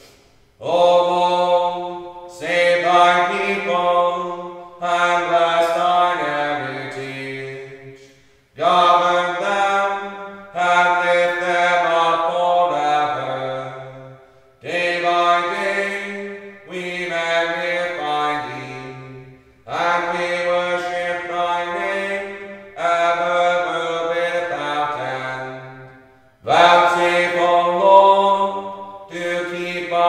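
Liturgical chant sung in phrases a few seconds long. Each phrase sits on held pitches that step up and down, with short breaks for breath between phrases.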